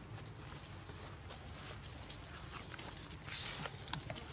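Footsteps and rustling on dry leaves and dirt, a patter of short crunches with a louder rustle near the end, over a steady high-pitched insect drone.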